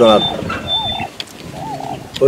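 A man speaking, his voice falling away about half a second in, followed by a pause with only a few brief, faint sounds.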